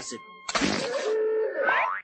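Cartoon soundtrack: a sudden spluttering spit about half a second in, as the character spits out food, then a strained gagging voice that rises in pitch near the end.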